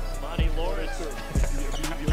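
Hip-hop beat with heavy kick-and-bass hits about once a second under a sustained deep bass, with a voice over it.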